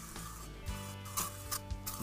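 Background music with held notes; over it, two brief hisses about a second apart, short bursts from an aerosol can of Pledge furniture polish being sprayed onto a tire.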